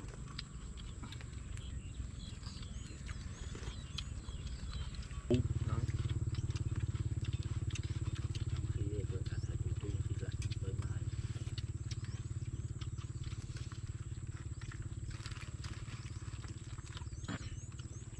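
Outdoor ambience around a meal: a low steady rumble that grows suddenly louder about five seconds in and then holds, with scattered light clicks of spoons on plates and a faint steady high tone.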